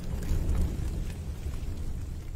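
Car fire burning: a steady low rumble of flames with a few faint crackles.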